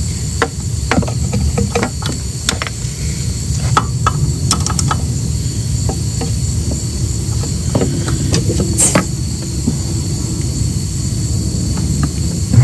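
Scattered light metallic clicks and taps of a wrench tightening the 10 mm bleeder screw on a brake stroke simulator, over a steady low rumble.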